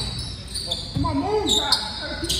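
Basketball bouncing on a hardwood gym floor in a large reverberant hall, with the sharpest bounce near the end, while a voice calls out partway through.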